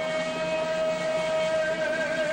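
Live band music holding one long, steady note with its overtones over a low accompaniment.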